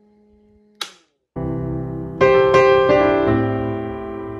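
Solo piano music, with notes struck every half second or so, starts about a second and a half in. Before it there is a faint steady hum, which ends in a sharp click about a second in, followed by a moment of dead silence.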